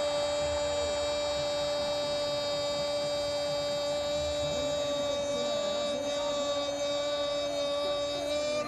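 A steady pitched hum, held unchanged at one pitch with faint overtones above it.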